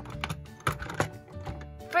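Soft background music with a few sharp plastic clicks as a small toy rolling suitcase is handled.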